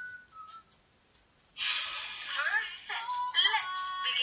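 A faint wavering whistle-like tone fades out, then after a short pause, background music starts abruptly about a second and a half in and continues, with sliding melodic lines.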